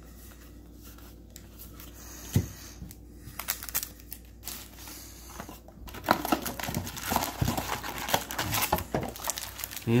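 Foil Yu-Gi-Oh booster pack wrappers crinkling as they are handled, a dense crackling that starts about six seconds in. Before it there is quieter shuffling of cards in the hands and a single sharp tap about two seconds in.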